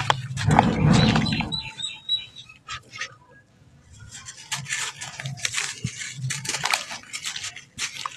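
Dry red sand being crumbled by hand into a tub of water. About half a second in, a lump drops in with a heavy, low plop. After a short lull, gritty crumbling crackles as sand pours from the hands onto the water.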